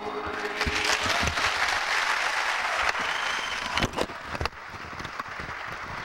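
Theatre audience applauding as a song's final held chord dies away; the clapping swells within the first second, then thins out after about four seconds. A few sharp knocks sound through the applause.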